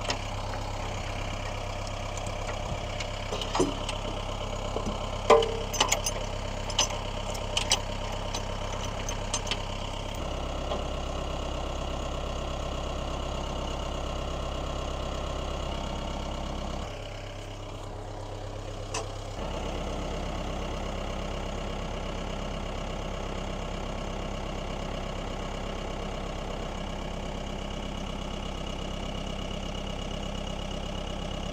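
Compact tractor engine idling steadily while its front loader lifts a steel farm wagon running gear, with sharp metal clanks during the first ten seconds. The engine note changes about ten seconds in, drops briefly a little past the middle with a single clank, then runs steady again.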